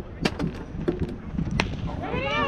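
A few sharp knocks, among them a softball bat striking the ball as the pitch is put in play, over a low rumble of wind on the microphone.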